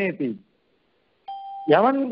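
A short, steady electronic beep lasting about half a second, about a second and a quarter in, after a moment of dead silence and just before the speech resumes.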